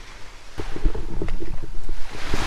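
Wind buffeting the microphone in irregular low rumbles, growing louder about half a second in.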